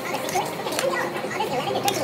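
Background crowd chatter: many voices talking and children calling out at once, with a few sharp clicks.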